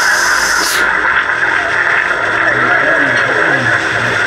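AM radio playing through its small speaker, tuned near the top of the band at 1639 kHz, with heavy reception static. A burst of loud hiss cuts off under a second in. A steady rushing noise continues, with a faint voice from the broadcast beneath it.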